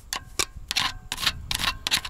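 A screwdriver tip tapping and scraping against a rear disc-brake caliper as it prods at small stones lodged beneath it. The sound is a string of irregular sharp metallic clicks, some with a short ring.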